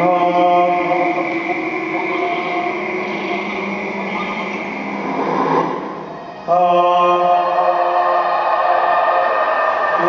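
Electronic drone music played over loudspeakers: a sustained chord of steady tones that swells into a noisier wash about five seconds in, dips, then comes back in abruptly at about six and a half seconds.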